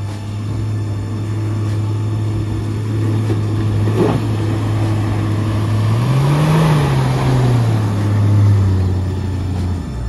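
Engine of a Toyota Land Cruiser 80-series 4x4 pulling steadily through deep mud ruts. The revs rise about six seconds in, then ease back down.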